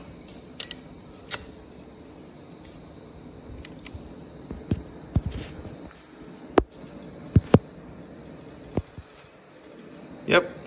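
Hand-work noise at a motorcycle's engine mount: a dozen or so scattered light clicks and knocks of metal tools and parts being handled, the sharpest about six and a half seconds in, over a faint steady room hum.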